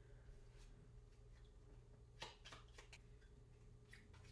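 Near silence: room tone with a faint steady hum, and a few soft clicks of playing cards being handled about two seconds in.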